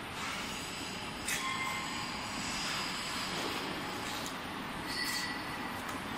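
Steady workshop background noise, with a few faint, brief high-pitched squeals.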